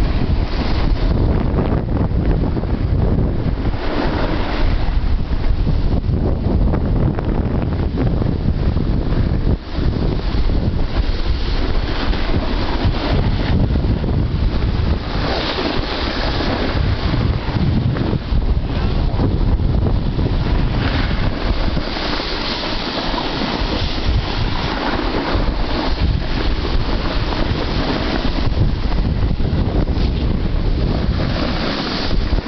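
Wind buffeting the camera's microphone while moving down a ski slope, a steady rushing noise heaviest in the low end, mixed with the hiss of snowboard and feet sliding over packed snow.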